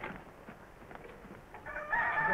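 A rooster starts crowing near the end, one long, steady crow, over faint scrapes and knocks.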